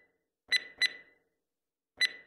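Short, high electronic blips against dead silence: two about half a second in, a third of a second apart, and another at the very end, each with a sharp start and a quick fade.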